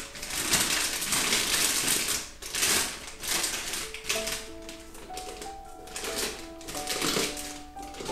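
Thin plastic piping bag crinkling and rustling as it is handled and folded over a plastic cup, in irregular bursts that are loudest in the first couple of seconds.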